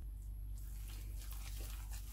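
A gloved hand mixing and squeezing wet flour dough in a glass bowl: soft, irregular mixing noises that pick up about half a second in, over a low steady hum.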